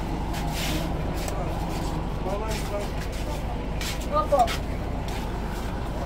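A bus engine idling close by: a steady low rumble that holds even throughout, with brief voices over it.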